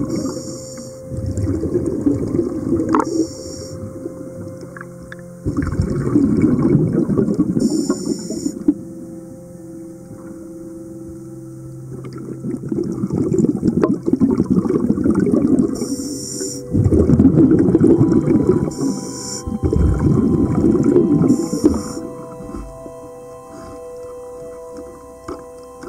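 Scuba diver's regulator breathing underwater: short high hisses of inhalation, each followed by a longer low bubbling rumble of exhaled air, repeating every few seconds.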